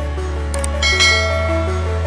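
Background music with a steady bass and a stepping melody; about a second in, a bright notification-style bell ding rings out over it and fades, just after a couple of soft clicks.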